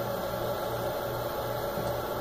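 Steady low electrical hum and hiss of studio room tone, with no distinct event.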